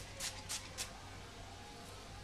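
An aerosol texturizing spray can sprayed onto hair in about four short hisses within the first second.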